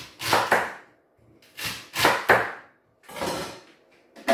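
Kitchen knife chopping celery stalks on a wooden chopping board: several sharp chops in short clusters of two or three, with one last knock a little after three seconds.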